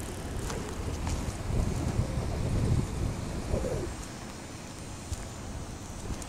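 Wind buffeting the camera microphone: a low, uneven rumble that swells between about one and three seconds in.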